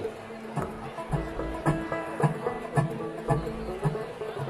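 Live bluegrass band starting a song: plucked strings picking a steady beat of about two notes a second over upright bass.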